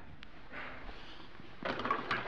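Handling noise: a faint click just after the start, then from about one and a half seconds in, a louder spell of rustling and small knocks as gloved hands move and the phone is swung about.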